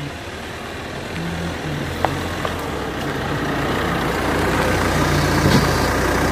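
Car engine running with a steady rumble that grows gradually louder.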